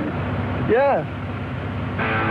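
A woman's short whooping cry, rising then falling in pitch, about a second in, over the steady running noise of a Jeep Wrangler.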